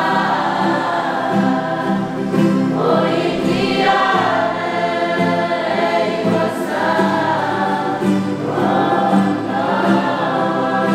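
Mixed group of young voices singing a gospel hymn together in held, flowing phrases, accompanied by two acoustic guitars.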